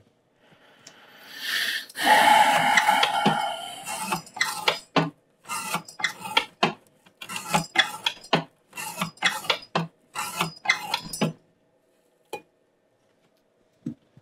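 A CPM 15V knife blade sawing through rope on a lever-arm cutting test rig: one long scraping stroke, then a quick run of short strokes that stops about 11 seconds in, followed by a single click. The edge is dulling and no longer cuts cleanly, leaving a few strands of the rope uncut.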